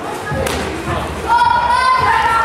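Thuds of boxing gloves and feet during kickboxing sparring in a large hall, with a sharp knock about half a second in. A brief, high, held tone near the end.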